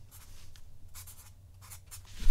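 Felt-tip Sharpie marker writing on a white surface: a few short, faint strokes as letters are drawn.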